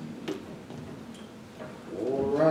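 A few soft clicks and knocks in a quiet room, the clearest about a third of a second in, as the last sustained note of the music fades out at the start.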